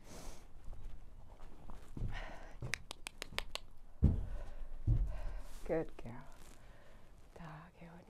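A horse's hooves thudding onto a horse trailer's loading ramp: two heavy thumps about a second apart, the first the loudest sound, preceded by a quick run of sharp clicks.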